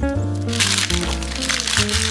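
Background music with a simple melody, and over it from about half a second in, a loud rustling crinkle of packaging paper being handled and crumpled.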